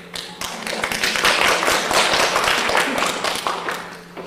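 Audience applauding: a dense patter of clapping that swells within the first second, holds, and dies away near the end.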